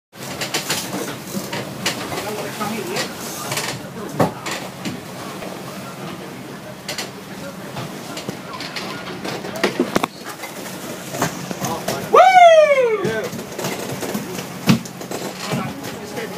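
Indistinct voices and knocks on a boat deck. About twelve seconds in comes a loud cry that falls in pitch over about a second.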